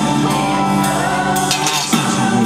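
Live rock band playing an instrumental passage: electric guitar over drums, with cymbal strokes ringing through.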